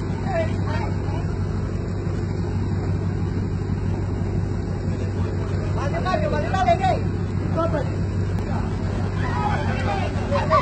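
A passenger ship's engine running with a steady low drone, with people's voices calling out over it about six to seven seconds in.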